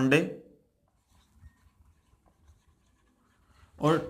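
Felt-tip marker writing on a whiteboard: faint scratches and light squeaks of the tip as a few words are written.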